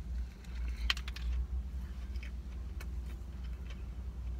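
A person biting into and chewing a fried chicken sandwich with romaine lettuce: a few short, soft crunches, the clearest about a second in, over a steady low hum.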